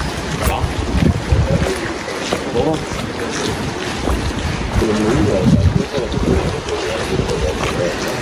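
Wind buffeting the microphone in uneven low gusts, with passers-by's voices in the background.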